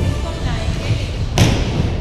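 Background music with a single sharp thump about one and a half seconds in, the loudest sound here.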